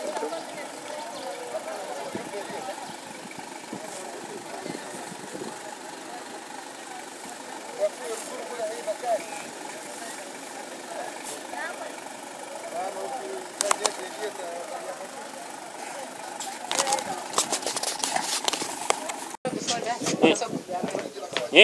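Indistinct chatter of many people talking at once outdoors over a steady background hum, with a run of sharp clicks and knocks in the last few seconds.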